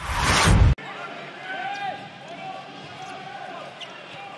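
A loud rising whoosh with a deep boom for a title graphic, cutting off suddenly under a second in. Then the sound of a handball game in a near-empty sports hall: shoes squeaking on the court and the ball bouncing.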